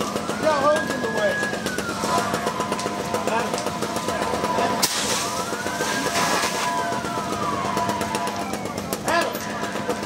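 An emergency vehicle siren wailing, rising and falling slowly about every five seconds, with a steady tone under it from about two seconds in. About five seconds in there is a short hissing rush of water spray from a fire hose.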